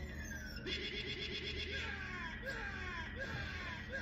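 Cartoon fighting-game sound effects: a long falling tone, then a warbling cry-like sound with short falling chirps repeating about twice a second.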